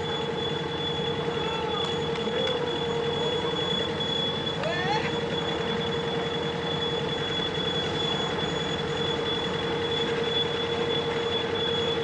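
A small boat's inboard engine running steadily at low speed, with a fast even pulse and a constant hum, and a thin steady whine above it.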